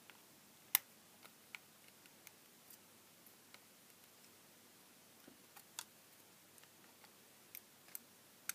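Scattered sharp metal clicks and snaps as side cutters bite into and peel back the thin metal small Edison screw cap of an LED filament lamp. About ten clicks, the loudest about a second in and another near six seconds, with near silence between them.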